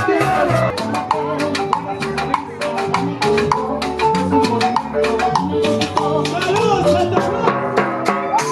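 Latin dance music played live by a street band: electric bass under a steady beat of timbales and cymbal strikes, with a marimba.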